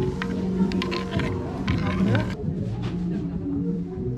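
A large ice cube and a spoon clinking against a stoneware bowl of thick barley drink as it is stirred: several light clicks over the first two seconds or so. Background music runs throughout and is heard alone after an abrupt change.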